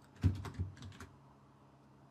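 Typing on a computer keyboard: a short run of keystroke clicks in the first second.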